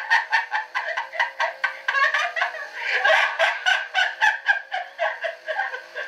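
A person laughing in a long, rapid run of short pulses, about five or six a second, without a break.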